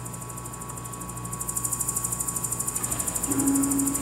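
Homemade electro-mechanical sound machines in a sound-art performance: a steady electric hum with a few held tones and a fast, even mechanical ticking that grows louder after about a second and a half, with a low steady tone coming in near the end.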